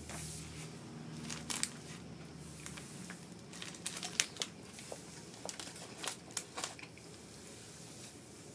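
Plastic snack bag crinkling in short, irregular crackles as it is handled and puffs are taken out of it.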